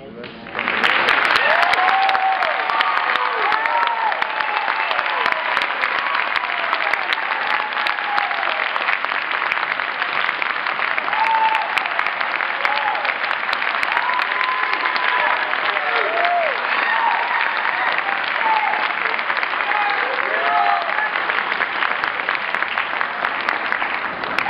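Audience applauding steadily, breaking out about half a second in, with cheering voices over the clapping.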